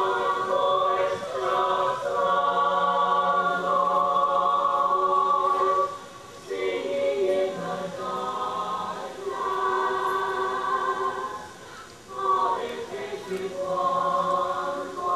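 Choir singing in long held notes, phrase by phrase, with brief pauses about six and twelve seconds in.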